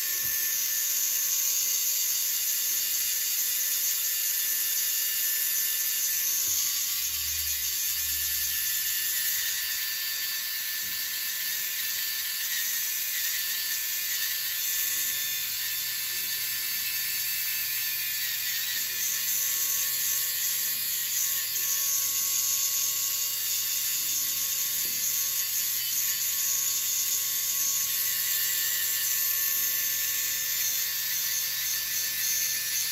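Podiatry electric nail drill with a rotary burr running in a steady, high-pitched whine as it grinds down thickened, fungus-infected toenails.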